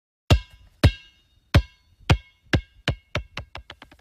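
Electronic intro sound effect: a run of sharp drum-machine hits with a ringing tone, coming faster and faster and fading as they speed up.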